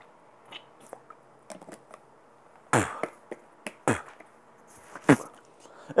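Three short, sharp spits about a second apart into a bottle, a snuff dipper spitting tobacco juice, with faint mouth clicks between.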